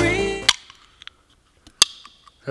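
Background music that stops about a quarter of the way in, then faint clicks of a finger on an aluminium drinks can's ring-pull and, near the end, the sharp crack of the can being opened with a brief faint trail.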